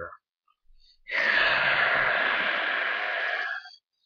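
A long, breathy hiss made by mouth, starting about a second in and lasting about two and a half seconds before cutting off. It is a voiced imitation of a screaming crowd for the toy wrestling match.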